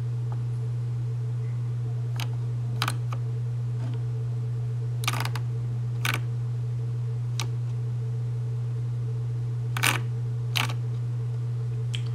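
A steady low hum with about eight short, sharp clicks scattered through it.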